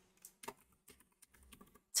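Computer keyboard typing: about ten soft, quick key clicks as a short file name is typed.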